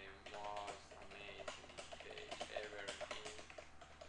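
Computer keyboard typing: a quick, uneven run of key clicks as a sentence is typed, with a man's voice, unclear in words, running over it.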